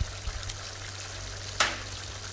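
Thin potato curry sauce simmering steadily in a pan, with one sharp click about one and a half seconds in.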